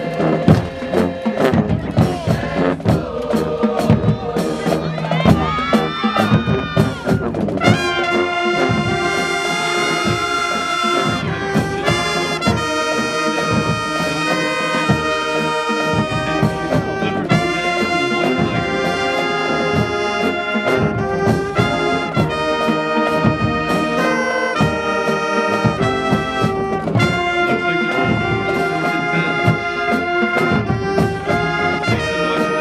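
High school marching band playing in the stands: brass, saxophones and sousaphones over drums, with a rising run of notes about six seconds in, then long held chords.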